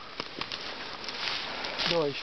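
Steady outdoor background hiss with a few faint clicks and light rustling; a man's voice starts just before the end.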